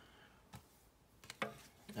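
A few faint taps and clicks in a quiet room, with a brief vocal sound about a second and a half in.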